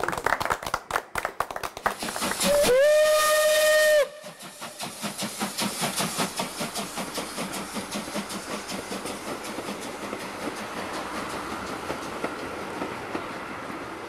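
A group claps by hand. About two and a half seconds in, a steam locomotive whistle sounds once for about a second and a half, sliding up at its start and then holding one pitch before cutting off sharply. A train then runs on with a steady rhythmic beat that slowly grows quieter.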